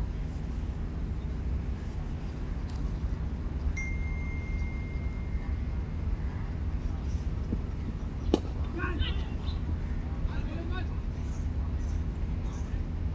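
Outdoor cricket-ground ambience with a steady low rumble. A thin steady tone sounds for a couple of seconds near the start. About eight seconds in comes a single sharp crack of a cricket bat striking the ball, followed by faint distant voices.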